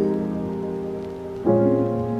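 Background piano music: a held chord slowly fading, then a new chord struck about one and a half seconds in.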